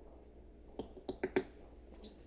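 A few light clicks of a plastic measuring scoop against the blender jar and the powder tub, bunched about a second in, as a scoop of wheatgrass juice powder is tipped into the blender.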